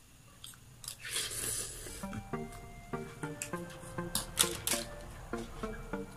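Eating noises, with a fork clicking on a plate and chewing in sharp bursts, the loudest about four seconds in. Background music with a melody of held notes comes in about two seconds in.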